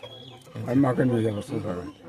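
An elderly man's voice speaking, starting about half a second in after a brief pause.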